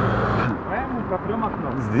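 Road traffic with a passing car's engine and tyre noise, which drops away suddenly about half a second in.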